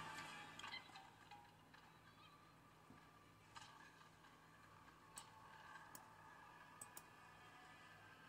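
Near silence: faint room tone with about five soft clicks in the second half, the clicks of the laptop's pointer as the browser menu is opened and the browser closed.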